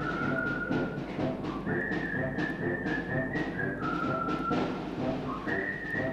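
Military wind band playing: a sustained high melody line that steps down and back up, over held lower notes and a regular beat of percussion strokes.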